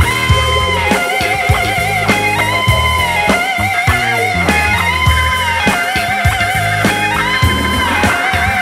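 Blues-rock band playing an instrumental passage: an electric guitar holds long lead notes, sliding up into some and wavering on others, over bass and drums.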